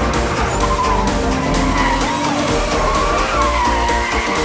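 A drift car sliding sideways with its tires squealing, the squeal wavering up and down in pitch over the engine. Electronic background music plays underneath.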